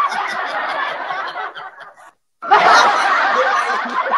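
A man and a woman laughing, fading away about two seconds in; after a brief moment of dead silence the laughter comes back loudly.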